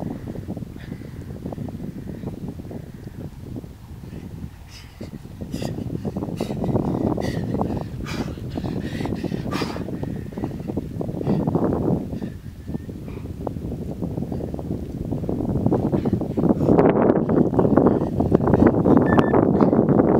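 Wind buffeting the microphone: a low rushing noise that rises and falls in gusts and grows stronger in the last few seconds, with a few faint clicks.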